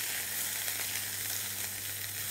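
Beef flank steak searing in an oiled frying pan, a steady sizzle as its surfaces are sealed without overdoing it, with a low steady hum underneath.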